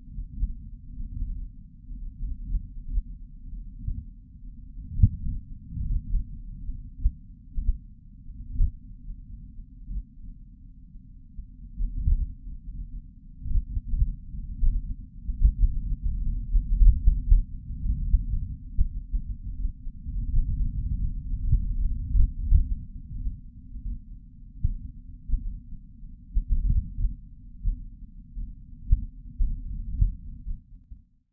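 A deep, muffled rumble with nothing above a low pitch, swelling and fading irregularly throughout.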